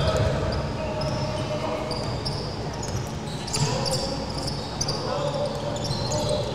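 A basketball being dribbled and bounced on a hardwood gym floor during live play, with short high squeaks from sneakers on the court.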